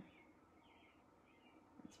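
Near silence: room tone, with a few faint, short high-pitched chirps in the middle.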